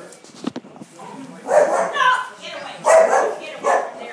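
A dog barking several times close to the microphone, starting about a second and a half in.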